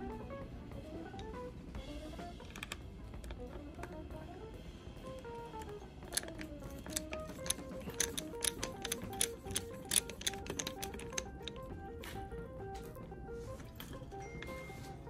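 Background music with a slow stepping melody. Through the middle a run of sharp, irregular small clicks and taps comes over it: a screwdriver working the screws out of a guitar's metal locking nut.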